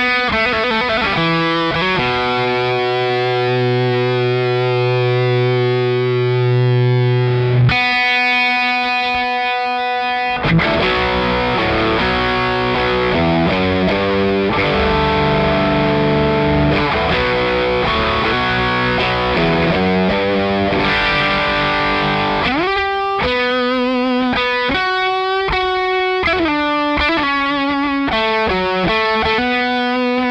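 Electric guitar (a Les Paul) played through a Keeley Aria Compressor Drive pedal with both its compressor and overdrive on, giving a compressed, overdriven tone with long sustain. Long held notes at first, a ringing chord about eight seconds in, then a busier passage and quick single-note runs near the end.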